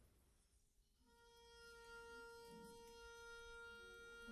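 A single long note held steady by one orchestral instrument, faint, coming in about a second in out of near silence. Lower held notes from other instruments begin to join near the end.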